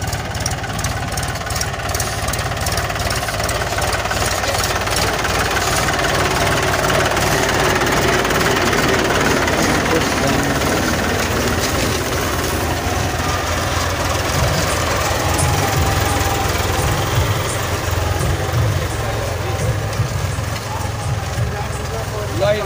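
Tractor diesel engine running steadily under a light load while pulling a 20-disc harrow through the soil, with a continuous low rumble under a broad hiss.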